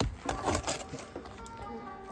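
A granite rock slab knocking and scraping on stone as it is pried up and flipped over, a sharp knock first and then a few lighter clicks. Background music comes in about halfway through.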